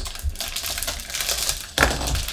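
Clear plastic bag crinkling and rustling as a plastic model-kit sprue is handled inside it, with a sharp knock near the end.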